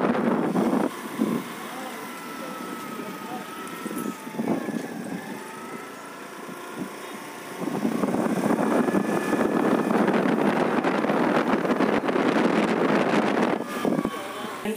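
Road and wind noise from a moving vehicle driving along a street. It is quieter through the first half and grows loud and steady about eight seconds in.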